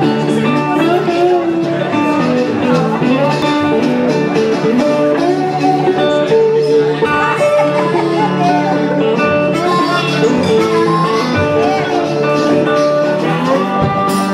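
Live blues played on a harmonica through a microphone, with held and bent notes, over a fingerpicked metal-bodied resonator guitar.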